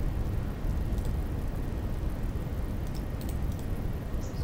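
Steady low background noise of the recording microphone between pauses in speech, with a few faint mouse clicks about three seconds in.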